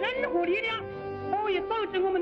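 A man delivering a speech in Chinese from an old recording, in short declaimed phrases over steady background music.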